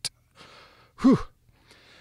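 A man drawing a breath in, then giving a short sigh that falls in pitch about a second in, with a faint breath near the end: he is catching his breath after saying a very long word in a single breath.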